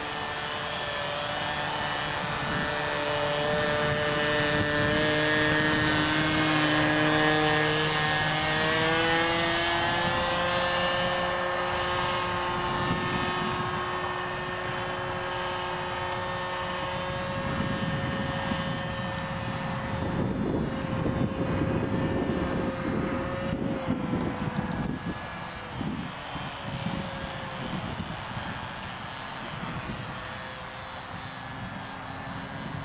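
RC model autogyro's motor and propeller droning overhead, the pitch climbing about a third of the way in and then holding steady. Wind buffets the microphone in gusts through the second half.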